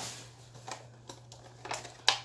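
Faint crinkling of plastic being handled, with a few small clicks.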